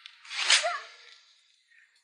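A person's single short, breathy vocal outburst: a sharp exhale about half a second in, ending in a brief falling pitch, then quiet.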